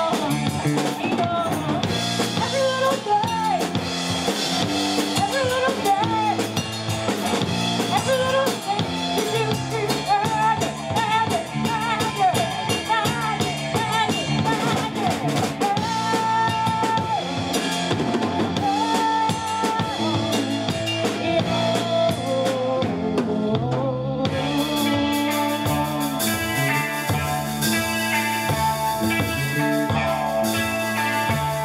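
Live rock band playing: a woman singing over electric guitar, bass guitar and a drum kit. About 24 seconds in, the singing stops and the band carries on with an instrumental passage.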